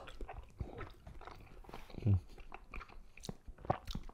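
Close-miked chewing of a mouthful of saucy noodles and shrimp, with many small wet clicks and smacks from the mouth.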